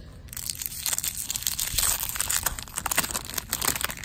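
A 1993 Bowman baseball card pack's wrapper torn open and crumpled by hand: dense crinkling and tearing that starts a moment in and carries on. The pack opens easily.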